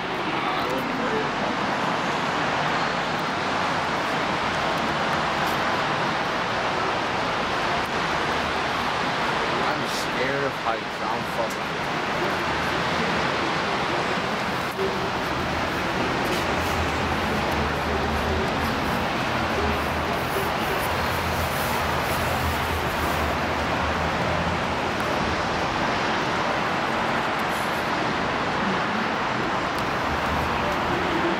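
Steady wash of city traffic noise heard from high above, with a deeper low rumble coming and going in the middle.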